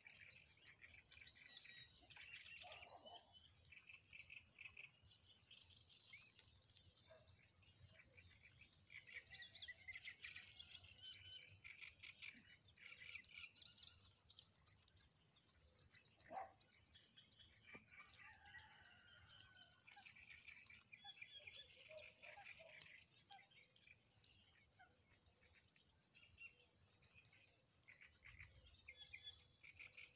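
Faint, high-pitched bird chirping in irregular runs, with one brief louder call about sixteen seconds in.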